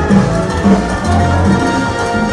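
Salsa band with a string orchestra playing live: an instrumental passage over a steady percussion beat.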